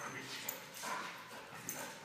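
A yellow Labrador moving about on its leash with a toy in its mouth: faint scuffling with a light click about half a second in.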